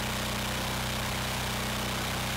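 Oversized 420cc, 15 HP single-cylinder gas engine on a log splitter running steadily, a constant low drone with no change in speed or loudness.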